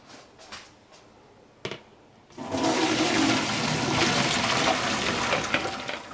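Hot cooking water and boiled potatoes poured from a steel pot into a plastic colander in a stainless steel sink: a steady loud splashing that starts about two seconds in and runs for some three seconds, after a light knock or two.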